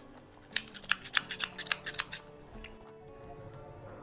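A spoon stirring thick, sticky plum chutney in a nonstick pan: a quick run of short clicks and taps for about a second and a half, with faint background music underneath.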